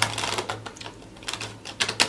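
A few light, irregular clicks and taps, with a faint steady low hum underneath.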